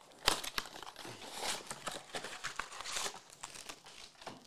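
Trading card packaging being handled and opened: plastic and foil wrappers crinkling and tearing in a dense run of crackles. The sharpest crackle comes about a quarter second in.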